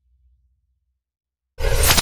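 The low rumbling tail of an intro logo sound fades out within the first half second, followed by silence. Near the end a sudden loud burst of rushing noise lasts under half a second, a whoosh as the intro gives way.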